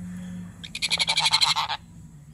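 Sun conure giving a rapid stuttering call about a second long, a string of about a dozen clipped pulses a second, starting just under a second in.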